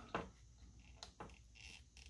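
Near silence: faint room tone with a few soft clicks, such as fingers handling a thin wire against a circuit board.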